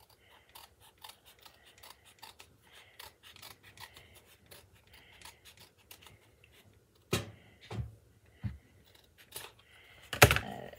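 Scissors snipping through thin cardboard in a run of small, quick cuts, trimming a round piece to size. A few louder knocks come about seven to eight and a half seconds in.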